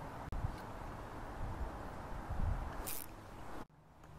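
Outdoor riverbank ambience: an uneven low rumble under a faint hiss, with a single sharp click shortly after the start and a brief rustle about three seconds in, cutting off suddenly near the end.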